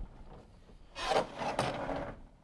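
Chalkboard eraser rubbing across the board in two quick strokes, a little after a second in.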